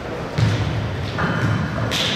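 A heavy thump about half a second in, echoing in a large gymnasium, followed by further sharp knocks near the end.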